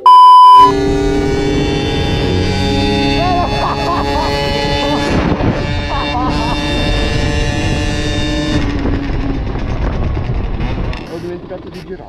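A loud single-pitch beep lasting just under a second, the TV colour-bar test tone, then a steady droning note of a small motorcycle engine running at an even speed, with some voice-like wavering over it, fading out near the end.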